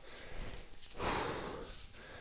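A short, breathy exhale starting about a second in and trailing off, with no words.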